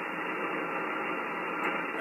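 Steady band noise from a Flex SDR-1000 software-defined receiver tuned to 3.700 MHz on the 80-metre amateur band, playing through its speaker. It is an even hiss with the highs and lows cut off sharply by the receive filter, and no signal is heard.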